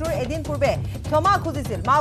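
A voice reading the news over a background music bed with a low pulse and steady ticking.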